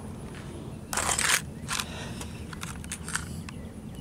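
Handling noise: a short rustle about a second in, then a few light clicks and crinkles, as a plastic blister pack of push nuts is picked up and the hand-held camera is moved.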